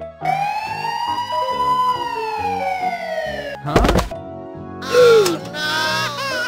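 Cartoon police siren sound effect: one long wail that rises slowly and then falls over about three seconds, followed by a thud just before four seconds and a short, loud falling whistle-like tone about five seconds in, over background music.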